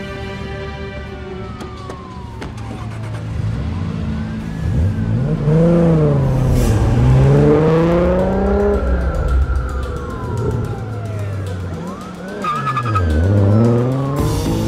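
A Toyota Supra's engine revving hard and climbing through the gears as the car pulls away, over a police siren wailing slowly up and down and a sustained film score.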